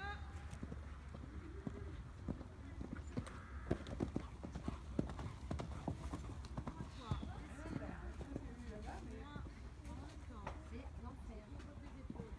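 Hoofbeats of a horse cantering on a sand arena, in a repeating run of soft strikes that is strongest from about two to five seconds in, with voices murmuring underneath.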